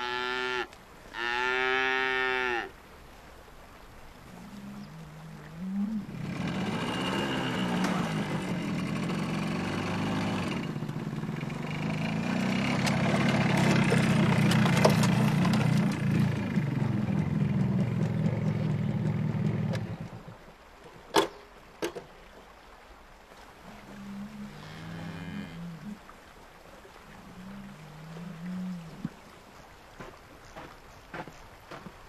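Livestock lowing: two long calls at the start and a few wavering calls near the end. Between them a motorcycle engine runs louder and louder for about fourteen seconds, then cuts off suddenly, followed by two sharp clicks.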